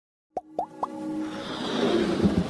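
Animated-logo intro sound effects: three quick bloops about a quarter second apart, each sliding upward in pitch and a little higher than the last, then a swelling whoosh that builds up.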